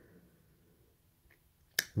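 Near silence with faint room tone, then a single sharp click near the end, just before speech resumes.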